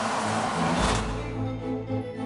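Cartoon sound effect of a heavy round vault door unlocking and opening as its big gears turn: a rushing noise with a deep rumble joining about a second in. Steady background music plays underneath.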